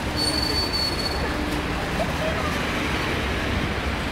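Street noise of cars in a slow motorcade driving past close by, a steady low rumble of engines and tyres with crowd voices mixed in. A thin high-pitched tone sounds for about a second near the start.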